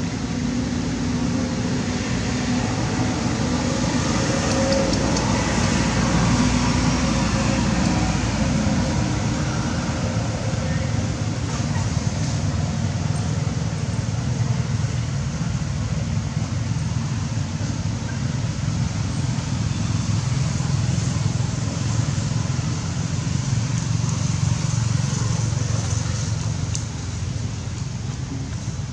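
Steady outdoor rumble of vehicle traffic, with indistinct background voices.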